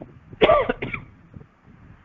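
A man coughs once, about half a second in, a short cough in two quick parts.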